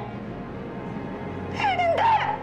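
A loud, high-pitched wavering cry, falling and then rising in pitch, starts about one and a half seconds in, over a low steady music bed.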